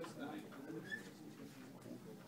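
Quiet, indistinct voices murmuring in the background of a small room.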